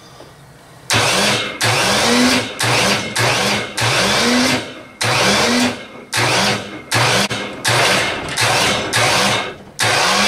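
Electric hoist jogged in short bursts, about twice a second, each burst starting with a rising whine, as it lifts an engine block on chains out of a homemade hot tank.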